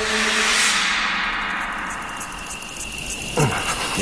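A rush of hissing noise that swells at once and fades away over about three seconds, with a faint steady high tone coming in about halfway; a voice sounds briefly near the end.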